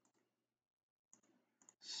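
Near silence: room tone, with a faint click about a second in and a short intake of breath near the end.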